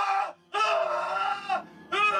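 A man screaming in terror: repeated high, drawn-out screams broken by short pauses for breath, the longest lasting about a second.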